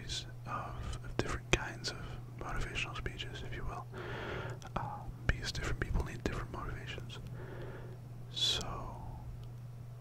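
A man whispering close to the microphone, with many small clicks between words. A steady low hum runs underneath.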